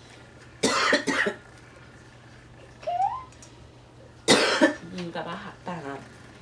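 Coughing: two coughs about a second in, a short rising sound near the middle, then another hard cough at about four seconds followed by short bursts of laughter.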